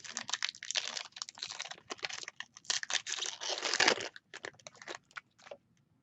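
Foil wrapper of a trading-card pack crinkling and tearing as it is pulled open by hand, dense for about four seconds, then a few lighter crinkles and clicks as the cards come out.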